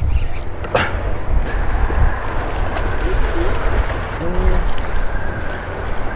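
Strong wind buffeting the microphone with a deep, uneven rumble, over water sloshing against the boat; a single sharp knock about a second in.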